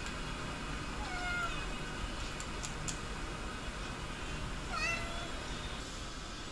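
A cat giving two faint short meow-like calls, one about a second in and one near the end, while it watches a moth overhead.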